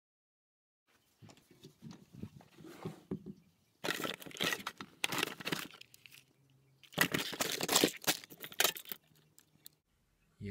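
Plastic wrapping and card packaging being handled and shuffled by hand, crinkling and rustling, with two louder bouts about four seconds in and again about seven seconds in.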